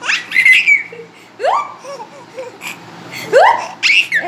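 Six-month-old baby laughing in three loud bursts, each opening with a rising squeal.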